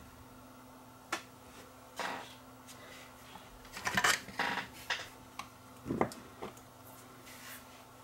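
Fingers handling a camcorder circuit board and the electrolytic capacitor laid flat on it: a string of small irregular clicks, taps and scrapes, busiest around the middle, with a sharper knock about six seconds in.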